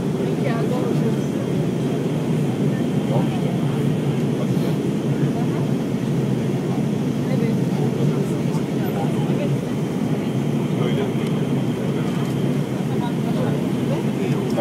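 Steady cabin noise inside an Airbus A320 in its descent: an even rumble of engines and airflow, with faint voices in the background.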